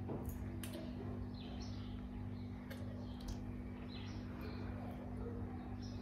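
Faint high bird chirps over a steady low hum, with a few light clicks.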